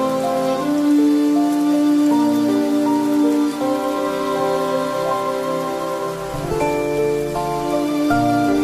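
Slow, calm instrumental music with long held notes and chords over a steady sound of falling rain. Deeper bass notes come in near the end.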